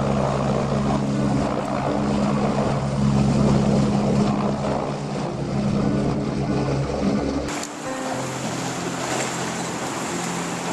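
Helicopter flying overhead, its rotor and engine noise mixed with background music; about three-quarters of the way through it cuts off suddenly to the even rush of a shallow river, with the music going on.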